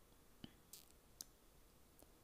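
Near silence, with a few faint clicks and a short scratchy swish in the middle: a water brush tapping and stroking on the paper of a colouring book.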